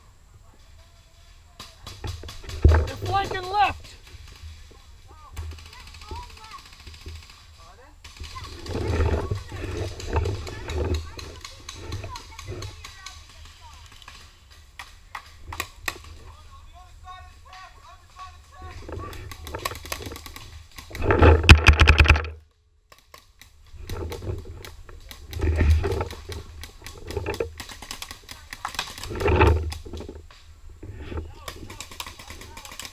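Voices calling out several times in words too unclear to make out, the loudest burst about two-thirds of the way in, over a low rumble on the microphone and scattered sharp clicks.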